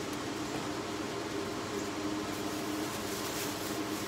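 A steady mechanical hum holding a few constant pitches, with faint rustling in the second half.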